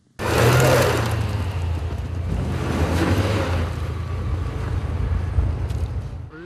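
A car engine running steadily under a loud hiss. It cuts in abruptly and eases off slightly toward the end.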